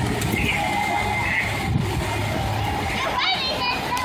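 Children's voices and chatter over the steady splashing of fountain jets. A child's high-pitched voice rises and falls near the end.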